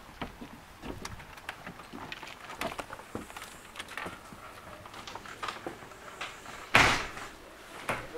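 Footsteps on wooden porch steps and a house door being opened and handled, light knocks and clicks throughout, with one loud bang near the end as the door shuts.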